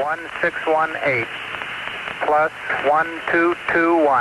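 Air-to-ground radio voice transmission: several short bursts of speech that the recogniser could not make out, narrow-band and over a steady hiss.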